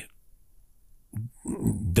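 A man's speech pausing for about a second, then short voiced hesitation sounds that lead into his next word.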